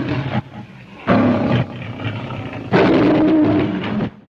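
Lion roaring in a series of long, rough roars. One trails off in the first half-second, another starts about a second in, and a third, loud one runs from near three seconds to the end.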